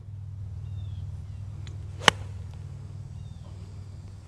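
A single sharp, crisp click of a Square Strike wedge's clubface striking a golf ball about two seconds in, over a low steady rumble.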